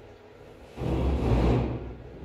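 Clothing fabric rustling and sliding as a garment is picked up and drawn over a pile of clothes, one swishing rustle of about a second starting a little before the middle.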